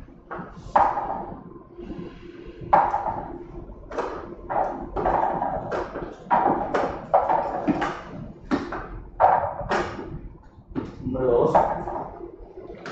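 Small numbered balls clattering inside a clear plastic lottery drum as it is turned by hand: a long run of irregular knocks, one or two a second, each with a short ring.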